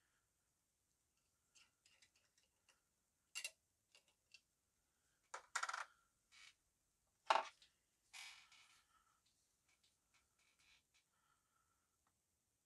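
Glass jar with a metal screw-on lid being unscrewed and handled: scattered light clicks, scrapes and clinks of metal and glass, the sharpest clink about seven seconds in, followed by a short scrape.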